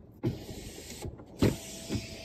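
Car door unlatching and opening, with a steady rush of noise and two knocks, the louder about halfway through, as a passenger climbs out of the seat.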